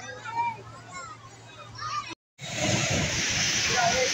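Children's voices and shouts on a spinning fairground ride. About halfway through there is a sudden cut, and then the loud, steady din of a dodgem car arena with the cars running.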